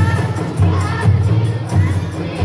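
Rebana frame drums and bass drums beaten in a steady rhythm, deep strokes about twice a second, with a group of voices calling out together over them.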